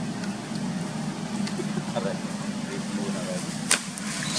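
Monkeys tussling in muddy water: one sharp, loud splash near the end, with faint short squeaks about halfway through and a steady low hum underneath.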